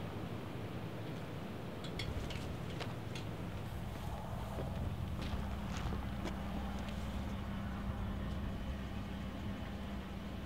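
Vehicle engine idling, a steady low hum that grows fuller about two seconds in, under outdoor air noise, with a few faint clicks.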